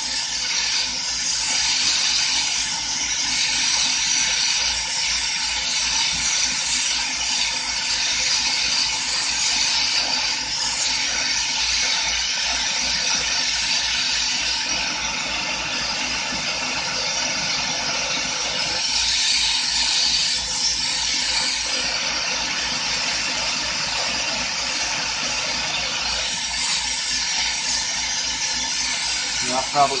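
Carlisle CC glassblowing bench torch burning with a steady hiss.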